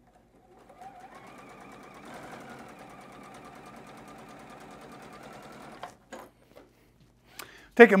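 Electric sewing machine stitching a seam through quilting cotton. It runs up to speed over the first second or so, sews steadily for about five seconds, then stops abruptly, followed by a couple of small clicks.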